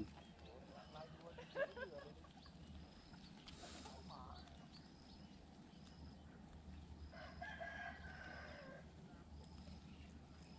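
Faint outdoor quiet with a thin high chirp repeating about once a second. A faint, drawn-out animal call lasting about a second and a half comes about seven seconds in.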